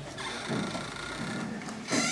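Soft rustling of Bible pages being leafed through in a small room, with a faint voice about half a second in.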